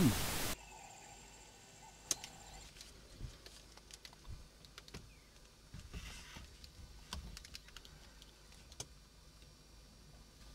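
A narrator's voice ends about half a second in. Then there is only faint hiss with scattered small clicks and knocks, one every second or so.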